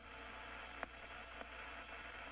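Faint steady static and hiss of a space-to-ground radio link with a low hum under it, and a soft click a little under a second in.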